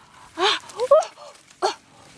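A woman's voice making about four short wordless exclamations, each bending up and down in pitch.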